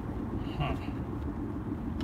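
Steady road and engine noise inside a moving car's cabin, a low rumble throughout.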